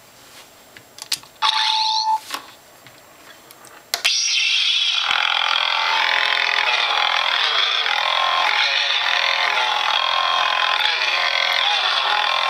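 Custom lightsaber's CrystalFocus 4.2 sound board playing a Novastar sound font through its small built-in speaker. A short electronic sound with a steady tone comes about a second and a half in; then the blade ignition sound about four seconds in, followed by the lit blade's continuous hum, which wavers at times.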